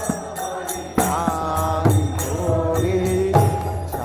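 Devotional kirtan: two mridanga drums played in a steady rhythm, with a man chanting a sung line into a microphone over them, starting about a second in and again near the end.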